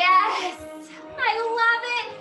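A song playing: a high singing voice holding gliding notes over backing music, in two phrases.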